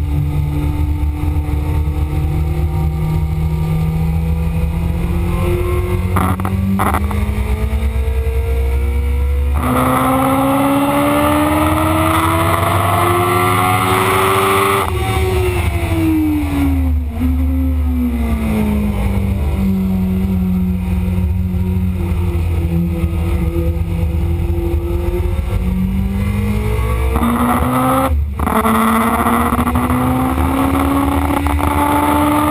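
Kawasaki ZX-7R inline-four engine at full throttle, climbing in pitch with quick upshifts, dropping in pitch for a few seconds about halfway as the bike slows, then pulling up again to another upshift near the end. Heavy wind rush on the microphone underneath.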